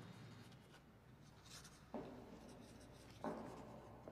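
Faint scratching and rustling, with two sudden louder strokes about two seconds in and again past three seconds.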